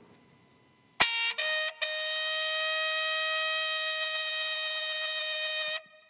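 Military bugle call: two short notes, then one long held note.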